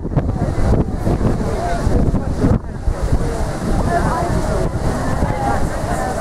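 Wind buffeting a camera microphone, a heavy, steady rumble, with indistinct voices talking underneath.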